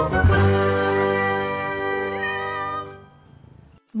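Short logo jingle of ringing chime-like tones that sustain and then fade out by about three seconds in.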